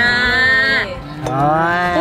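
Two long, drawn-out voice-like calls: the first held flat for under a second, the second rising and then falling in pitch.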